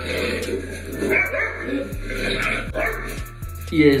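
Golden retriever puppies yipping and barking in several short calls over background music.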